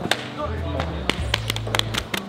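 A quick run of sharp hand slaps and claps, about eight, coming faster toward the end, over background music with a steady low beat.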